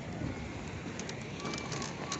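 Steady open-air noise, with short high bird chirps and clicks coming in about a second in.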